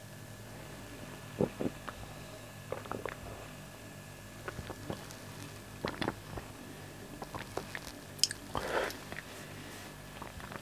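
Faint gulps and wet mouth clicks of a man swallowing mouthfuls of lager from a glass, a few scattered through, with a short breathy sound near the end.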